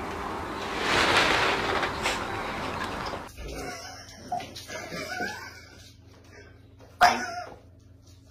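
A rustling, hissy noise for the first three seconds, then small puppies playing tug-of-war over a jumper with short squeaky whimpers and yips, and a sharp loud yelp near the end.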